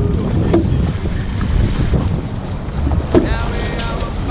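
Wind buffeting the microphone over water rushing and slapping along a sailing Hobie catamaran's hulls, a steady low noise.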